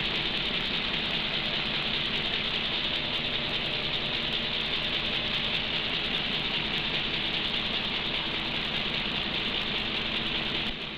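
Refrigeration plant keeping the ice block frozen: a steady hiss with a faint low hum underneath, unchanging throughout.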